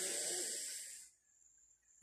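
A man's audible breath out, a soft hiss lasting about a second and fading away.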